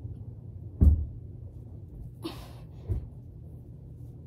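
Two dull thumps on a floor, one about a second in and a smaller one near three seconds, with a breath out between them, from a person doing double leg lifts while lying on the floor.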